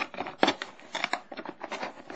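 A plastic VHS cassette being handled against its paper sleeve. Quick irregular clicks and scrapes of plastic on paper, sharpest at the start and about half a second in.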